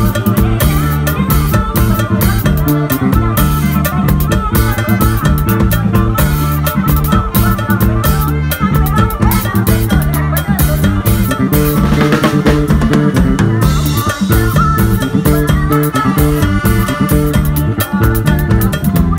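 Live band music led by a drum kit played busily, with rapid hits on snare and toms and cymbals over bass and guitar. A cymbal crash rings out about twelve seconds in.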